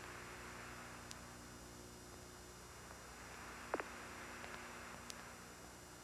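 Faint steady hiss with a low mains hum from the old audio track, broken by a few small clicks. The sharpest click comes a little past halfway.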